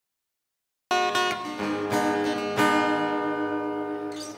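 Acoustic guitar chords, struck about a second in and twice more, each left to ring out as the song's introduction.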